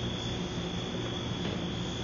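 Steady low hum with a hiss over it, even throughout, with no distinct knocks or events.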